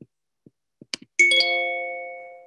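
A short chime of two notes struck almost together about a second in, ringing and fading away over about a second, with a few faint clicks before it.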